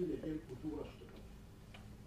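A man speaking in a meeting room, his words breaking off about a second in, followed by a pause with a few faint clicks.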